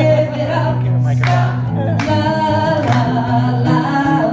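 Live acoustic performance: a woman sings long held notes into a microphone over a strummed acoustic guitar.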